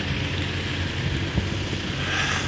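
Wind buffeting the phone's microphone outdoors, a steady rushing noise over a low, continuous rumble.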